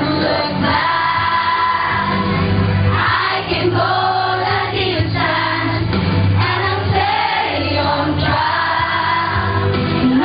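A group of children and adults singing a song together in chorus, over an accompaniment of steady low bass notes.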